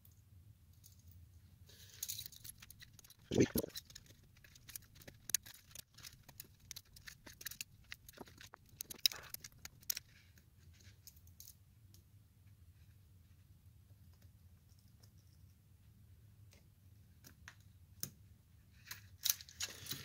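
Brass ball chain rattling and clicking against a pull-chain lamp socket as the socket is put back together, in scattered light ticks with a quiet spell in the middle. One louder short thump comes a few seconds in.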